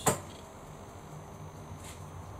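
A sharp click as the power is switched on to the streetlights, followed by a faint, steady low electrical hum as the LED fitting and the sodium lamp power up.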